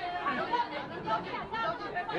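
Several people talking at once, their voices overlapping into chatter with no single clear speaker.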